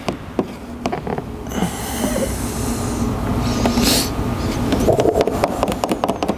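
Hands stretching and pressing clear tint film over a plastic headlight lens: a rubbing, rustling hiss from about a second and a half in to about four seconds in, with small clicks.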